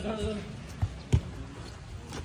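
A voice trails off, then two dull thumps land about a third of a second apart over a steady background hum.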